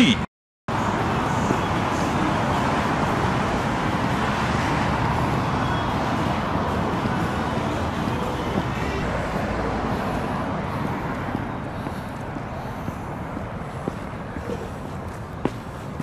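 Steady noise of road traffic, loudest at first and slowly fading, with a few light ticks near the end.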